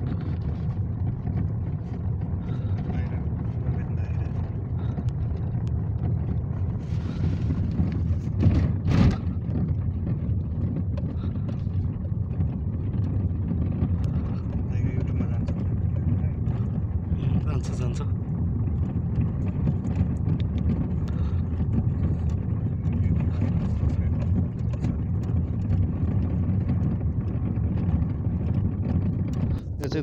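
Steady low rumble of a car's engine and tyres heard from inside the cabin as it drives slowly along a paved street, with a brief louder sound about nine seconds in.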